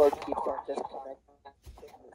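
Light clicks and rustles of a plastic weather radio being handled and turned over as its power cord is plugged in, with faint voices behind.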